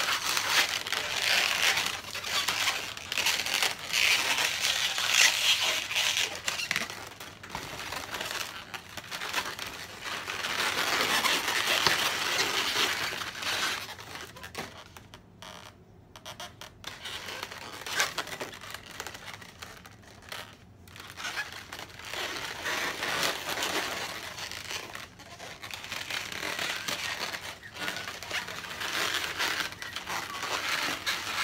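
Inflated latex modelling balloons rubbing against each other and against hands as the legs of a balloon sculpture are adjusted, in irregular stretches with a couple of brief quieter gaps past the middle.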